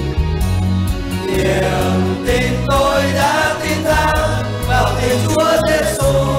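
A group of voices singing a religious song over a backing track with a bass line; the singing grows stronger a little under halfway through.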